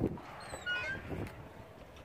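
Wind buffeting the microphone, with a brief high, wavering squeak about half a second in and a soft thump a little after a second.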